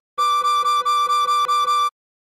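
Tin whistle playing a quick run of about eight repeated, separately tongued notes on one pitch (D5), stopping short near the end for a rest.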